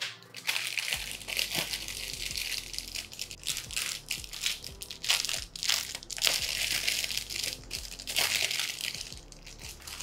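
Thin clear plastic bag crinkling as it is handled and opened to take out an 18650 lithium-ion cell: irregular, crisp crackling that dies down near the end.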